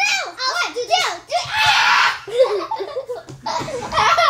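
Young girls laughing and squealing in high voices, with a burst of loud, breathy laughter about halfway through.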